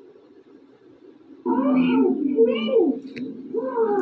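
A dog howling in long, wavering calls that rise and fall. After a quiet first second and a half comes one howl, then a short click, then another howl starting near the end.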